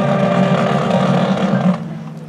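Marching band brass and percussion holding one loud full-band chord, which cuts off shortly before the end.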